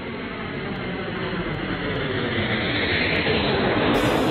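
Jet aircraft engine noise, a dense rushing roar that grows steadily louder.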